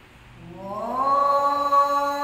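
A young man's solo voice chanting the azan (Islamic call to prayer). About half a second in, it slides upward in pitch and then holds one long, steady note.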